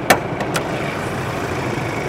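Hood of a Ford Ranger Raptor pickup being unlatched and raised: a sharp click as the hood latch releases, then a second click about half a second later. A steady low mechanical hum runs underneath.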